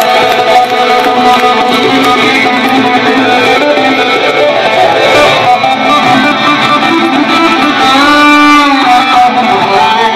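Live electric guitar solo on a gold-top Les Paul-style guitar through an amplifier: a run of notes, then near the end a long held note bent up and back down.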